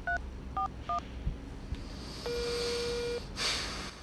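Mobile phone keypad dialling tones, three short two-note beeps in the first second. Then comes a single steady tone lasting about a second, the ringback of the call connecting, and a brief rustle as the phone is raised to the ear.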